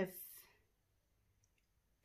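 A woman's voice finishing a word, then near silence: room tone.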